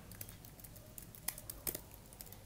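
A handful of scattered computer keyboard keystrokes, short sharp clicks a few tenths of a second apart, over a faint steady room hum.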